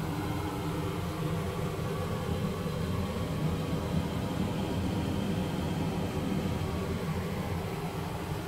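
Steady low mechanical hum and rumble of a cruise ship's onboard machinery heard inside a cabin bathroom, unchanging throughout.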